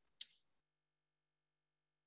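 Near silence, broken once about a fifth of a second in by a brief, faint click-like hiss.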